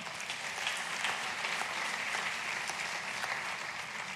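Congregation applauding, a steady clapping of many hands.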